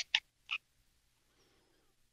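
A man's speech trailing off, two very short soft hissing sounds within the first half second, then near silence: a pause in the talk.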